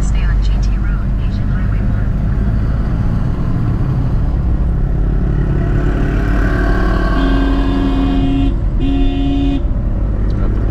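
Car running in city traffic, its engine and road noise a steady low rumble heard from inside the cabin. Near the end a vehicle horn honks twice, first a long blast and then a short one.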